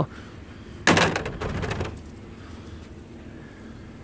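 A short clatter of rough native copper pieces knocking against each other and a wire-mesh sieve tray as a piece is put down and another picked up, starting about a second in and dying away within about a second.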